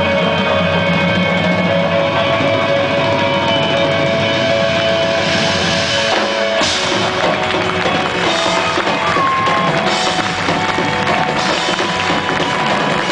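Rock music with drum kit. Held chords ring for the first half, then the drums come in about six and a half seconds in and keep a beat.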